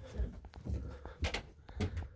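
About five irregular knocks and thumps on wood, which are taken for squirrels running around on the roof.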